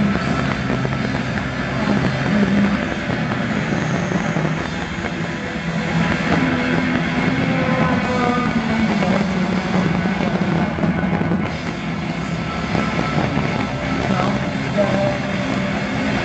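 Live rock band playing a loud instrumental passage, a dense continuous wash of electric guitar and drums with no singing.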